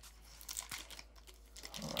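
Wrapper of a Topps Gypsy Queen baseball card pack crinkling in faint, quick crackles as it is handled and torn open.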